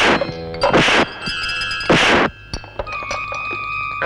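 Film soundtrack music with two loud crashing hits, about one second and two seconds in, followed by steady held high notes.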